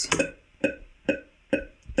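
Metronome click track playing back from the recording software: evenly spaced sharp clicks, about two a second.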